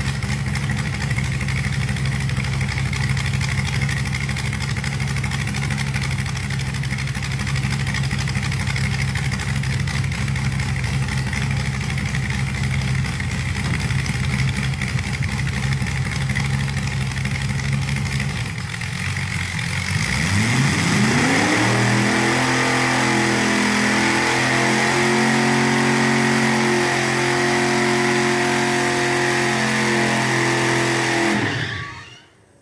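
Rat rod engine running loud through open side exhaust pipes that are spitting flames, held at steady revs. About 19 seconds in the note dips, then climbs to a higher steady pitch that holds to the end.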